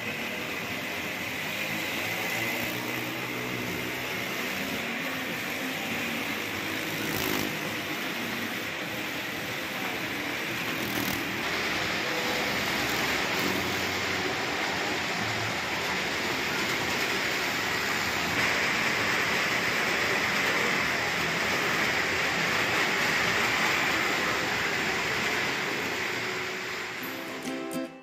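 Motorcycle engine running continuously as the bike circles the vertical wooden wall of a well-of-death drum, heard from inside the enclosure, with the level swelling slightly in the middle.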